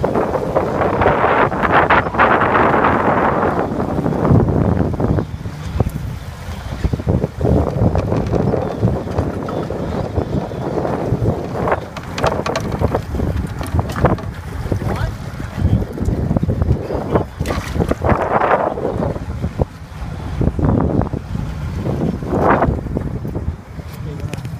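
Wind buffeting the microphone aboard a small boat at sea, over a steady low rumble of water and boat noise, gusting louder a few times.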